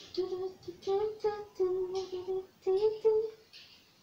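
A woman humming a tune in short, held notes, trailing off shortly before the end.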